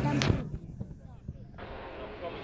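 A single sharp bang about a quarter second in, over voices; right after it the sound turns dull and quieter for about a second.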